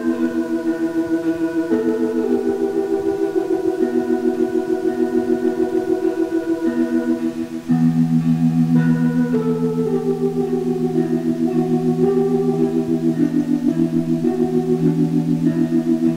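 Dark ambient dungeon synth music: slow, sustained organ-like synthesizer chords pulsing about five times a second, moving to a new chord every few seconds. A deeper bass note joins about halfway through.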